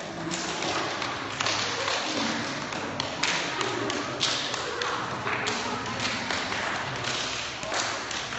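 A group of people clapping hands, alone and with partners, in irregular sharp claps and thumps about one or two a second, with voices murmuring among them.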